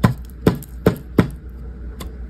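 Dry baked cornstarch chunks crunching crisply: four sharp crunches about 0.4 s apart in the first second and a half, then a short pause.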